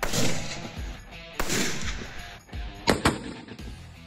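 Two rifle shots about a second and a half apart, each ringing on and fading, from a 6.5 Creedmoor bolt-action rifle. Two short, sharp clicks follow near the end.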